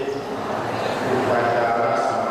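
Group Buddhist chanting in a steady, drawn-out monotone, several voices holding long pitched lines together.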